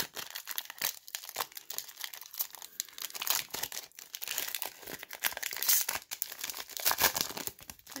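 Foil wrapper of a Panini Mosaic basketball card pack crinkling and tearing as it is ripped open by hand, in a dense run of irregular crackles.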